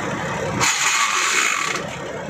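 Inside a truck cab, a short mechanical rattle, then a burst of compressed-air hiss lasting about a second from the truck's air brake system.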